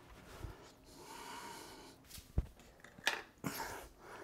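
Faint breathing, then a click and a few light knocks as a Fractal Design R5 PC tower case is handled and set down.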